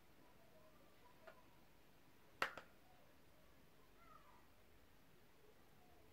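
Near silence: quiet room tone, broken by a faint click just after a second in and a sharp double click about two and a half seconds in.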